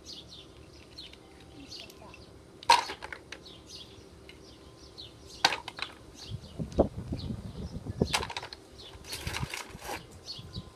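Small birds chirping over and over, with a few sharp clacks of plastic toys knocking on a tiled floor, the loudest about three seconds in, and a low rumble around seven seconds.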